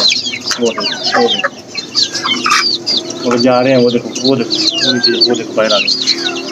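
A flock of Aseel chicks peeping continuously in many short falling chirps, with hens clucking among them. A longer, wavering call from a hen comes about three and a half seconds in.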